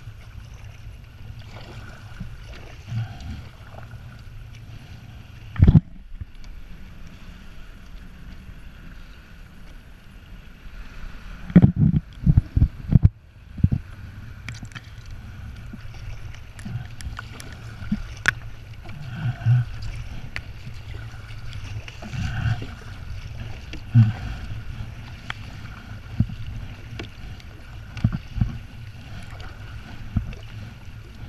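Double-bladed paddle strokes and water sloshing around a sit-on-top kayak, with a steady rumble of wind and water on the microphone. There is a sharp knock about six seconds in and a quick run of loud knocks near the middle.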